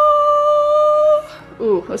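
A single high note held steadily by a voice, sung or hummed, for about a second and a half. It cuts off just over a second in.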